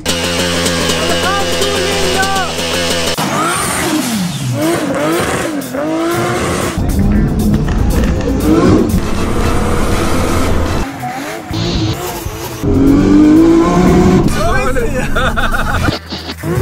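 A car engine revving hard with tyres squealing, mixed with voices and some music.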